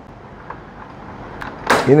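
Freshly carbonated drink fizzing in a soda maker bottle with a faint steady hiss. There is a light click about half a second in and another shortly before a man's voice near the end.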